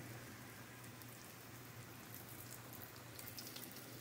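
Faint sizzle and crackle of a breadcrumbed pork cutlet shallow-frying in hot canola oil in a stainless steel frying pan.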